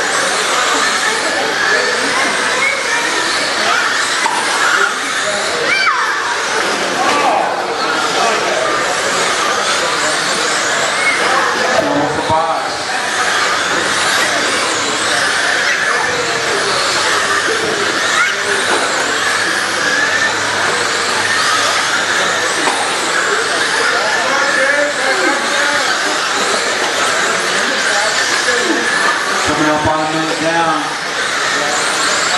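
Radio-controlled race cars running laps on a dirt oval, their electric motors whining and rising and falling in pitch as they speed up and pass, under a steady bed of voices.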